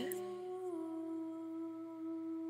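A woman humming one held note, dipping slightly in pitch less than a second in and then holding steady.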